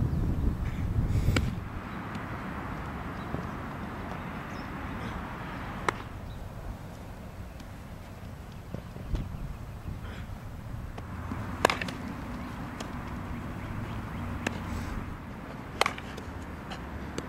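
Three sharp cracks of a baseball several seconds apart during infield ground-ball practice, over a steady outdoor hiss. Wind rumbles on the microphone in the first second or so.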